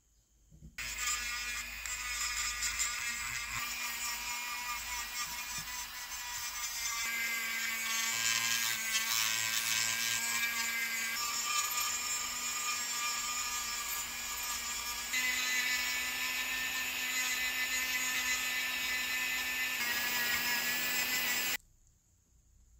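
Handheld rotary tool spinning a polishing wheel against a small cast-metal bust: a steady high whine that starts suddenly, shifts abruptly in pitch and level a few times, and cuts off suddenly near the end.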